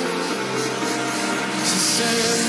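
Background music with a dense, noisy mix, running on without a break; a bright hiss swells near the end.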